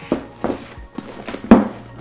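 A padded fabric camera bag being turned around and set down on a wooden surface: a few soft thumps, the loudest about a second and a half in.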